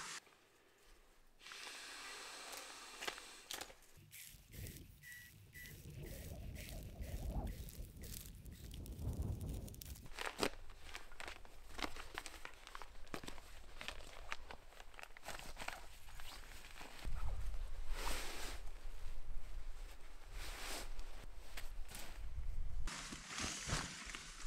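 Rustling, crinkling and handling noises as camp bedding is laid out (spruce boughs, a reflective blanket and an inflatable sleeping pad), with footsteps and many small clicks and knocks. It gets louder in the second half, with a low rumble.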